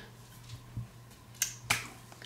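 Two sharp clicks about a third of a second apart, roughly one and a half seconds in, over a faint steady low hum.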